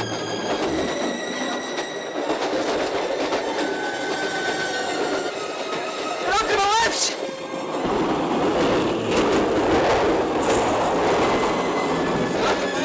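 Diesel passenger train running at speed, a steady rolling rumble with wheel clatter that grows louder in the second half. A short wavering rising tone sounds a little past the middle.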